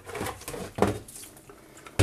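Plastic salad spinner basket knocking and rattling against its bowl as it is handled and lifted out: a few light, irregular knocks, the loudest a little under a second in.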